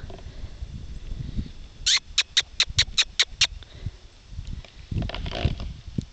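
A person making a quick run of about eight kissing squeaks, roughly five a second, to call a horse over.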